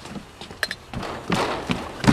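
A few scattered soft thumps and clicks over low background noise, with no speech.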